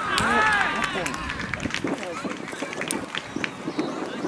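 Young footballers' shouts on the pitch: a loud, drawn-out shout about half a second in, then scattered calls and short knocks. The shouts fit a celebration just after a goal.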